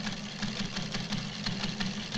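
News ticker machine clattering rapidly as it prints out paper tape.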